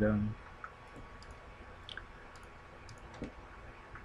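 Computer mouse clicking: several faint, separate clicks spread over a few seconds, over a steady faint hum.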